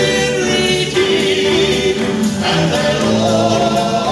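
Male southern gospel quartet singing live in close harmony into handheld microphones, holding long notes that shift every second or so.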